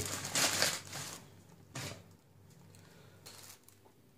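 Thin plastic bag stretched over a cooking pot crinkling and rustling under a hand, loudest in the first second, with one more short rustle about two seconds in, then only faint rustles.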